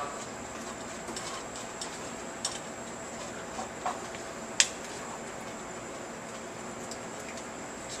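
Steady kitchen room noise with a few light clicks of a metal utensil against a metal chinois as tomato sauce is pressed through it; the sharpest click comes about four and a half seconds in.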